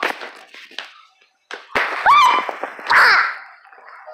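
Knocks and crackles of the phone being handled with its lens covered, then two loud, high-pitched squeals about a second apart, the second falling in pitch.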